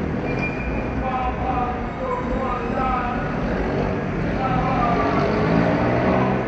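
Steady low rumble of city traffic, with people talking over it.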